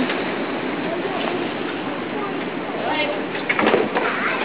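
Sea waves breaking against a sea wall: a steady rush of surf with a louder sudden surge near the end, under faint voices of onlookers.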